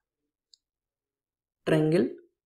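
Near silence with one faint, short click about half a second in, then a man's voice starts speaking near the end.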